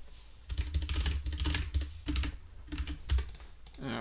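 Typing on a computer keyboard: quick runs of key clicks beginning about half a second in and going on until just before the end, as code values are edited.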